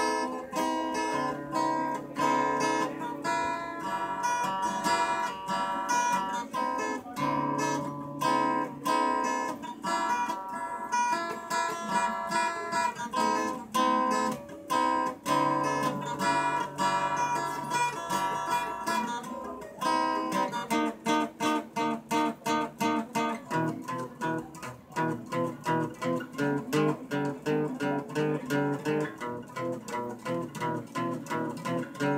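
Solo acoustic guitar playing an instrumental rock piece. It rings out picked and strummed chords, then about twenty seconds in changes to a choppier rhythm of short, even strokes.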